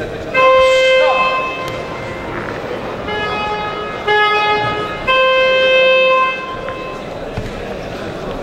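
Four horn blasts of about a second each, held at a steady pitch. The first and last are higher and loudest; two lower, weaker ones come between them, about three and four seconds in.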